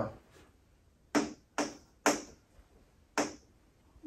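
Four short, sharp taps of a stylus on the glass of a touchscreen whiteboard, the first three about half a second apart and the last about a second later.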